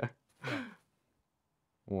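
A short breathy sound from a man, about half a second in, between bits of speech. The rest is dead quiet, the room sound cut away by the wireless microphone's strong noise cancellation.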